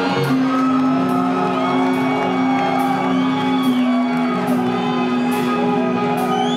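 A live rock band playing a slow ballad in a large hall, with long held electric guitar and keyboard notes.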